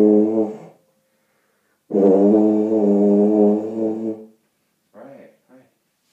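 Tuba playing two long, steady held notes on the same low pitch, the first ending just under a second in and the second starting about two seconds in and lasting about two and a half seconds. It is a student's practice note A, fingered with the first and second valves.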